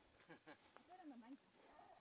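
Near silence, with a faint, low voice murmuring briefly.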